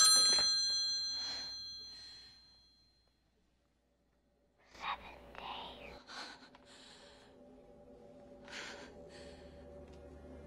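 A telephone bell's ringing dies away as the handset is lifted, followed by about two seconds of silence. Then come faint breathy gasps and whispers over a low, slowly swelling drone.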